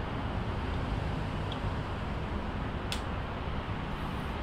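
Steady low background hum and noise with a single light click about three seconds in.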